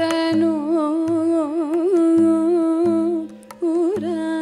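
A Carnatic vocalist sings a heavily ornamented melodic line with sliding, wavering pitch over a steady drone, breaking off briefly near the end before resuming. Low sustained tones and sharp percussive clicks come and go underneath.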